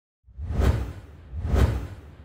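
Two whoosh sound effects from a logo intro, about a second apart, each swelling with a deep low rumble under an airy hiss, then fading.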